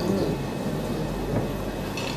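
Steady low rumble of room noise with a constant low electrical hum, during a pause in the talk.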